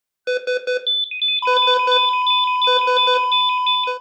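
Synthesized electronic beeping in quick groups of four, alarm-style like a patient monitor. About one and a half seconds in, a steady high tone comes in and holds, with faster high pips above it.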